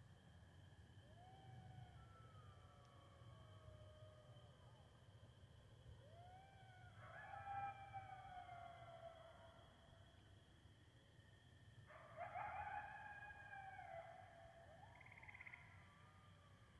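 Coyote pack howling and yipping, several voices overlapping in sliding, wavering calls. Faint single howls come first, then two louder bouts of group calling, about seven and about twelve seconds in.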